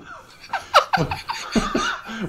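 Several men laughing together in short bursts, the pitch of many bursts falling away.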